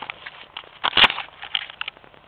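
Close handling noise on the camera's microphone: irregular crackles and rubbing with a sharp knock about a second in.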